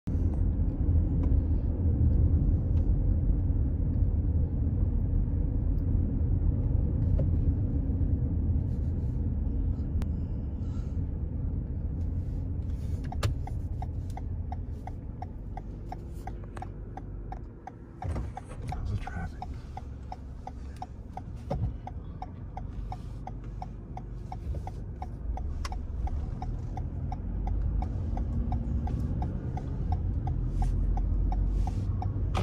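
Low rumble of a car's engine and road noise heard from inside the cabin while driving slowly, louder over the first dozen seconds and then easing. From about a third of the way in, a turn signal ticks steadily, about twice a second, as the car waits at an intersection to turn.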